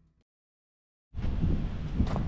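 Dead silence, then about a second in a low rumbling wind noise on the camera microphone starts abruptly and runs on loudly.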